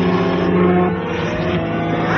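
Synthesized sci-fi sound effects over an electronic music score: a steady electronic drone with a slowly rising tone in the second half.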